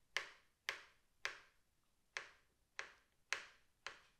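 Kitchen knife cutting through carrot and striking a cutting board: seven sharp taps at an uneven pace, about half a second to a second apart.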